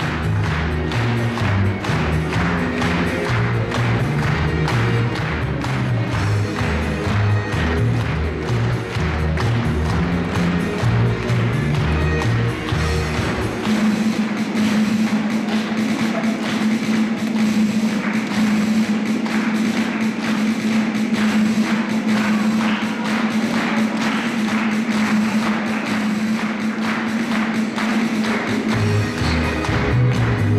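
Music with a steady beat. About halfway through, the pulsing bass line gives way to a held low note, and the bass line comes back near the end.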